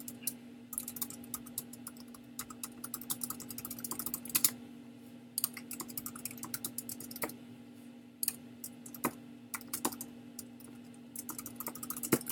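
Typing on a computer keyboard in short runs of quick keystrokes with brief pauses between them, over a faint steady hum.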